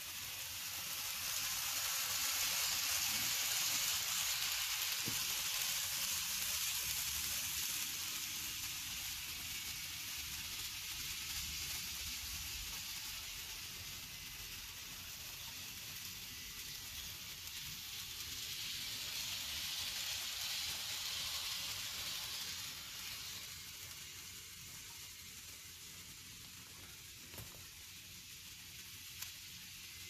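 N scale model trains running on the track: a steady whirring hiss of small motors and metal wheels on rail. It swells twice as a train passes close by, then dies down as the Amtrak locomotive slows and stops at the platform. Two faint clicks come near the end.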